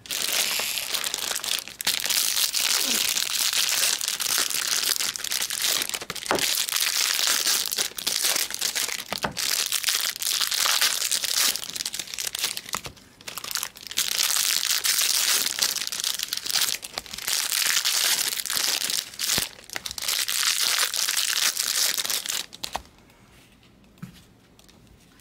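Foil wrappers of Bowman Draft Jumbo baseball card packs crinkling as they are torn open and crumpled by hand. It comes in long runs with short pauses and stops shortly before the end.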